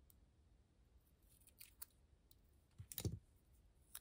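Small scissors cutting out paper stickers from a sticker sheet: a few faint, sparse snips, the loudest about three seconds in.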